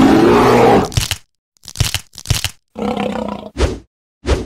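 Monster sound effect: one loud, harsh roar for about the first second, then a string of short, choppy growling and crunching bursts broken by silences, including one longer growl with a low, steady pitch.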